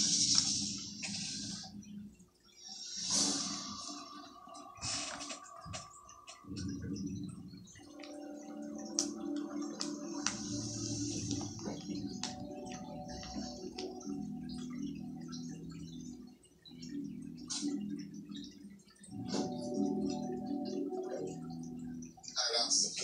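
Background television music with sustained tones, dotted with small sharp clicks from plastic Lego pieces being handled at the table.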